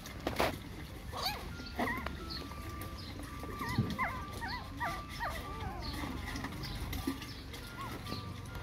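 Several puppies whimpering and squeaking while they eat: many short, high calls that rise and fall, often overlapping. There is a brief burst of noise about half a second in.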